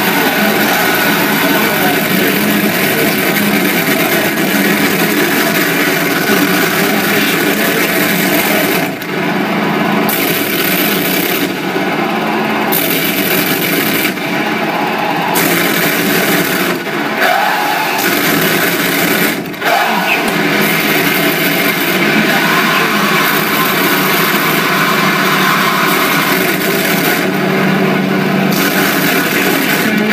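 Harsh noise music played live through amplified electronics and effects pedals: a loud, dense wall of distorted, grinding noise. Its highest hiss cuts out for a moment about six times.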